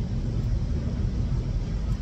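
Steady low rumble and hiss of a car heard from inside the cabin.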